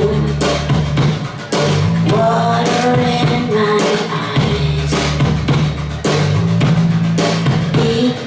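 Live rock band playing loud and steady: electric guitar, electric bass and drum kit, with no lyrics sung in this stretch.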